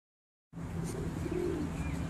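Feral pigeons cooing, a short low coo about halfway through, with faint small-bird chirps above a steady low rumble; the sound starts suddenly about half a second in.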